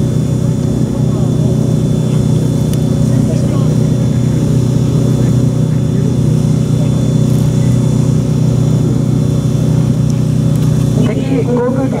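An engine running at a constant speed with a steady low drone.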